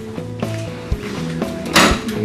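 Background music: sustained chords changing in steps over a low beat about once a second, with a bright hissing burst near the end.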